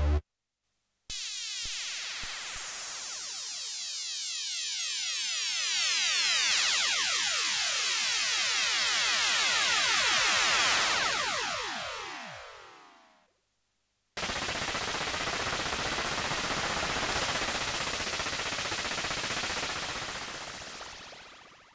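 TAL J-8 software synthesiser, an emulation of the Roland Jupiter-8, playing its "FM drop" cross-modulation preset: a dense tone whose many overtones sweep downward together over about twelve seconds and fade out. After a second of silence, the "FM hard" preset comes in as a harsh, noisy, steady tone that starts to fade near the end.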